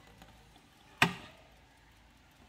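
A single sharp wooden knock about a second in, from the case of a heavy wooden bracket clock as it is handled and turned around.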